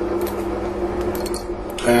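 A few light clinks of small metal rivets and P-clips handled in a plastic parts box, shortly after the start and again about a second in, over a steady low hum.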